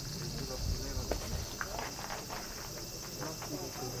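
A steady, high-pitched drone of summer cicadas, with faint voices under it and a couple of soft thumps about a second in.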